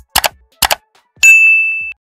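Like-and-subscribe end-card sound effects: two quick double mouse clicks about half a second apart, then a single bright notification-bell ding a little after a second in that rings on and fades.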